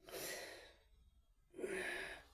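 A man's audible breaths close to the microphone, taken in a pause between sentences: one breath at the start and a second about a second and a half in, just before speaking again.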